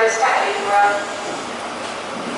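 Class 43 diesel power car of a Grand Central InterCity 125 (HST) running as the train rolls slowly into the platform: a steady, even running noise that takes over after about a second, once a voice stops.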